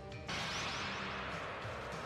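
Anime soundtrack: music, broken about a third of a second in by a sudden noisy crash-like sound effect that keeps going to the end.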